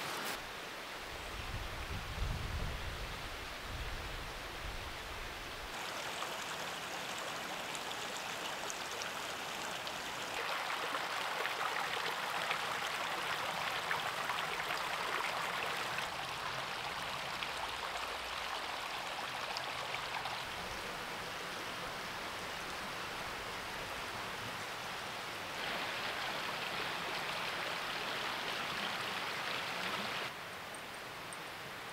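Steady rushing hiss of a small forest creek's flowing water, stepping abruptly louder and softer every few seconds, with a low rumble during the first few seconds.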